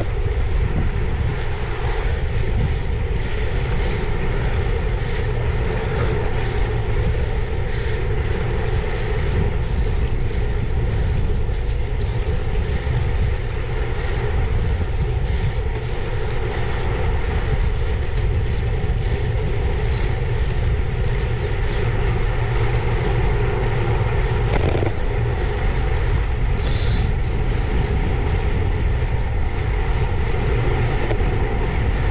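Wind rushing over the microphone of a camera riding on a moving road bicycle: a steady low rumble mixed with tyre noise on tarmac. A brief high chirp near the end.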